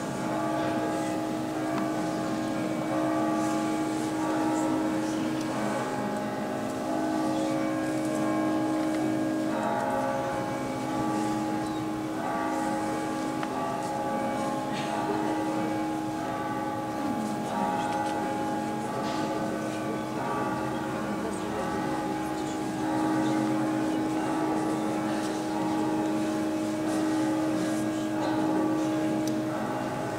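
Choir singing slow Orthodox liturgical chant in long, held chords that move to new notes every few seconds, with a few faint knocks and shuffles from the crowd.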